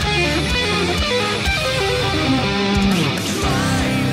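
Electric guitar playing a fast metal riff of rapid single notes, settling about three seconds in into held notes with vibrato.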